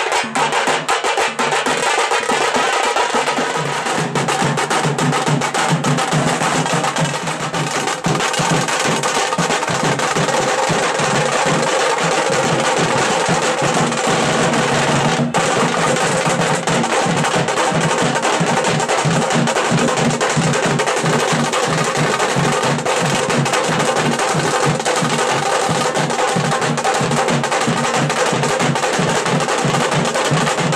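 A drum band of strap-hung drums beaten with sticks in a fast, dense, unbroken rhythm.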